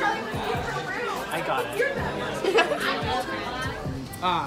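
Voices talking over one another, with background music underneath.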